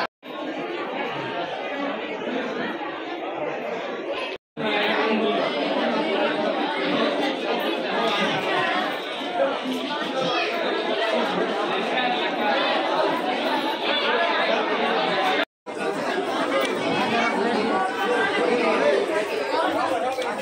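Many people talking at once in a large, roofed hall: a steady crowd chatter with no single voice standing out. The sound cuts out completely for a split second three times: just at the start, about four and a half seconds in, and about fifteen and a half seconds in.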